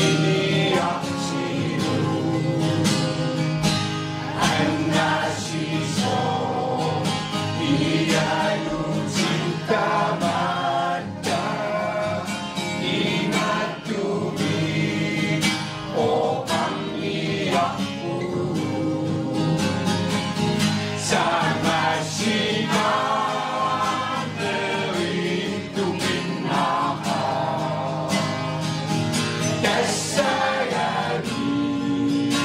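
A mixed choir of men's and women's voices singing together, accompanied by a strummed acoustic guitar.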